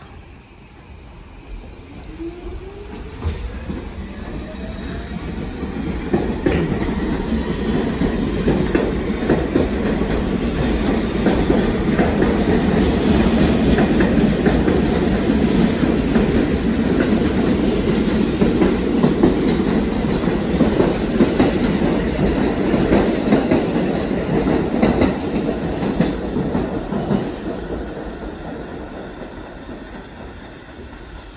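A New York City subway train pulling out and accelerating past: its traction motors give a rising whine, and the wheels rumble and clatter over the rail joints. The sound builds to a loud passing rumble, then fades near the end.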